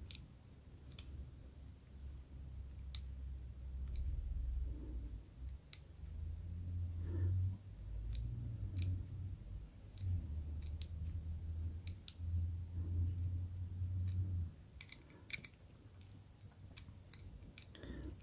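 Dial of a small Master Lock combination padlock being turned back and forth with the shackle held under tension, giving faint, scattered clicks as it is worked through its gates to find the third number. A low rumble of handling runs through the middle.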